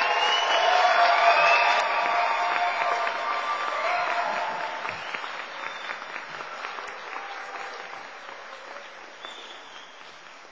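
An audience in a large hall applauds, with a few shouts and cheers near the start. The clapping is loudest about a second in, then thins and dies away over the following seconds: a brief, modest round that is judged too small for the occasion.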